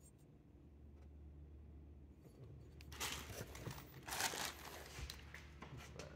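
Rustling and crinkling of packaging being handled, in two bursts about a second apart, over a low steady hum.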